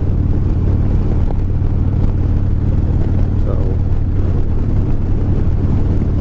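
Cruiser motorcycle engine running steadily at highway cruising speed, a low even drone, with wind and road rush over it.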